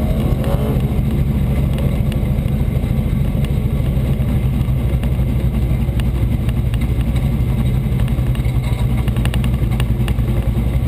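Hobby stock race car engine running at low speed, a steady low rumble picked up close from a hood-mounted camera, with no revving.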